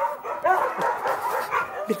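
A man's frantic, high-pitched voice, crying out and whimpering in panic without clear words.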